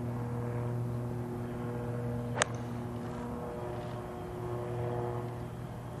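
A golf iron striking the ball: one sharp, short click about two and a half seconds in. A steady, low engine drone runs underneath.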